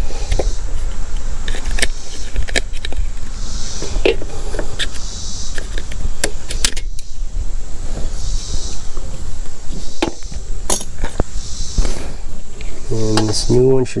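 Needle-nose pliers and hands working a plastic priming-bulb retaining ring out of a pressure washer's plastic housing: scattered small clicks, taps and scrapes of metal on plastic over a steady low rumble.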